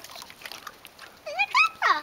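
A dog whining in two short swooping cries near the end, the pitch rising then falling, eager but hesitant to go into the water.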